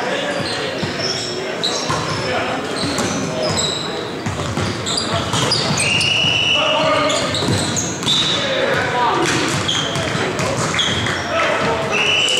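Indoor volleyball rally on a hardwood court: sneakers squeaking, the ball struck with sharp smacks, and players calling out, echoing in a large gym.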